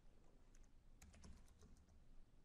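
A few faint computer keyboard taps over near silence, most of them in the second half.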